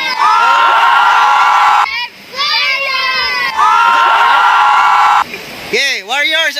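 A group of children shouting and cheering together in two long bursts, each a held shout of a second and a half or so, with other voices calling between them.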